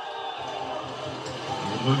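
Sports-hall crowd noise with indistinct voices in the background, a steady murmur at moderate level.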